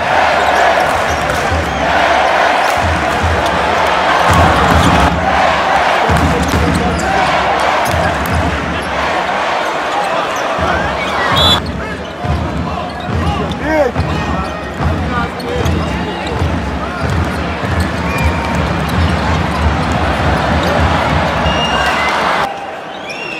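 A basketball being dribbled on a hardwood court amid the noise of a large arena crowd. In the second half the crowd eases off a little, and sneakers squeak on the floor between the repeated bounces.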